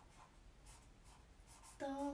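Faint scratching of a pen drawing on paper, in short strokes. A woman starts humming near the end.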